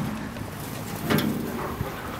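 Outdoor background noise with some wind on the microphone, a brief scuffing sound about a second in and a small click near the end.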